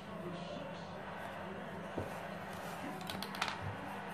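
Small pencil scratches and clicks as a thin wooden strip is marked and handled, over a low steady hum. There is a single light tap about two seconds in, and a cluster of small clicks near the end.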